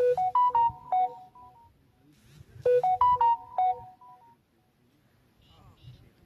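A mobile phone ringtone close to the microphone: a short electronic tune of quick beeping notes, played twice about two and a half seconds apart.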